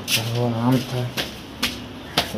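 Footsteps on concrete stairs, sharp slaps about every half second, with a man's voice speaking indistinctly for the first second or so.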